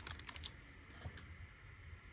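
Stiff, glossy Topps Chrome trading cards being handled in a stack. There is a quick run of light clicks as the cards are shuffled and squared, then a single faint click about a second later.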